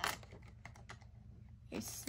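A scatter of faint, light clicks and taps of makeup brushes being handled as one is picked out of the set, with a slightly sharper click at the very start.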